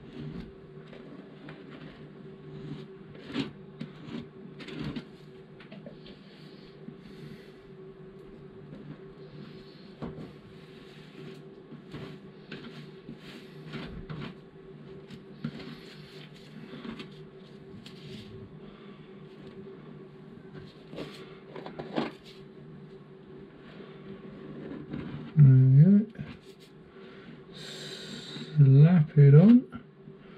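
A plastic applicator scraping and dabbing thickened epoxy filler into a ground-out crack in a fibreglass hull: soft scrapes and small taps over a steady low hum. A few short wordless vocal sounds come near the end.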